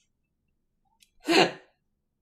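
A woman's single short, loud burst of laughter with an "oh", coming about a second in after near silence.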